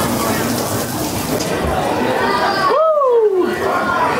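Heavy rain pouring down around a covered walkway, a steady hiss with a crowd murmuring under it. About two and a half seconds in it cuts off suddenly to an indoor queue, where a single voice slides down in pitch and crowd chatter follows.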